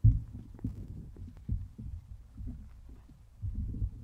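Microphone handling noise: a mic on a stand is gripped and moved, giving irregular low thumps and rumble. It starts suddenly with a loud thump, and a second cluster of thumps comes near the end.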